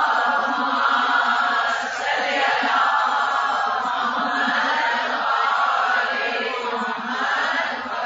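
Voices chanting in long, drawn-out phrases that swell and fall about every two seconds.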